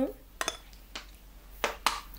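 A metal spoon clinking a few times against a stainless-steel serving platter while sliced cucumbers in sauce are scooped onto it. The clicks come about half a second in and again near the end.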